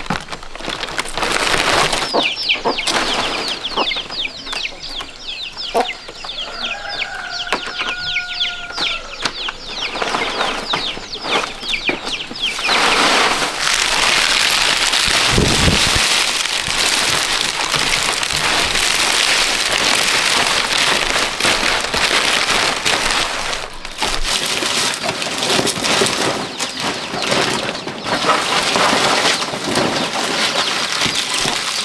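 Domestic chickens with rapid high falling chirps behind them, and a rooster crowing once, held for about two seconds, about a third of the way in. From about twelve seconds in, a steady dry rustle of leaves being handled takes over.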